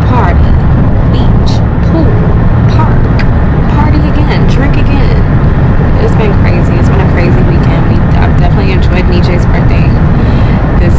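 Steady road and engine noise heard inside the cabin of a moving car, a deep continuous rumble.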